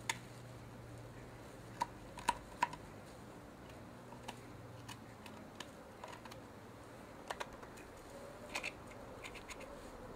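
Blunt knife scraping and picking boiled flesh off a deer skull: faint, irregular small clicks and scratches of the blade on bone.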